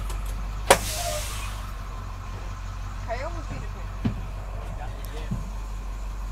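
School bus engine running with a steady low rumble, heard from inside the cabin. A single sharp clack comes under a second in, and faint voices are heard later.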